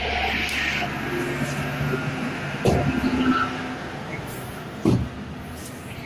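A fish handled on a stainless steel bench scale: two thuds, one near the middle and one near the end, over a steady engine hum of street traffic.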